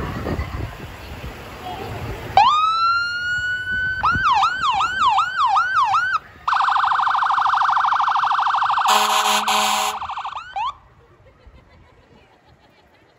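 Fire engine's electronic siren: a wail that rises and holds, then about three yelps a second, then a fast warble. Near the end come two short horn blasts, and then it cuts off suddenly.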